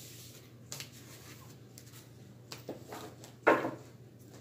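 Tarot cards being picked up and gathered off a cloth-covered table: soft sliding and rubbing with a few light taps, the loudest one about three and a half seconds in.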